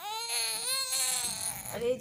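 A toddler crying out in one long, wavering cry lasting about a second and a half, followed near the end by a woman's short exclamation.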